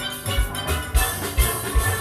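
A steel band playing a Panorama arrangement: many steelpans sounding together over a steady low drum beat about twice a second.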